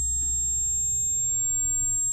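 A steady high-pitched electronic whine, with a low bass note from the rap beat held underneath and fading out.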